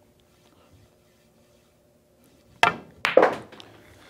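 A pool shot: the cue tip strikes the cue ball, then about half a second later a sharp clack as the cue ball hits the object ball. The shot is a stun shot on the five ball.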